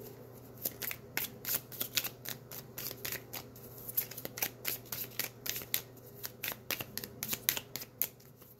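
Tarot deck being shuffled by hand, the cards clicking and slapping against each other in quick, irregular strokes, a few a second.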